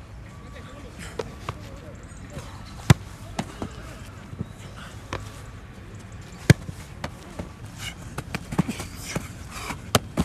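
Footballs being kicked and caught by goalkeepers' gloves during training: separate sharp thuds, the loudest about three and six and a half seconds in, with a quicker run of smaller knocks near the end.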